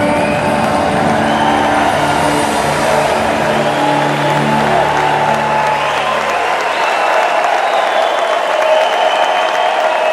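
The orchestra and rock band's final held chord dies away, its low notes ending about seven seconds in, while the audience applauds and cheers.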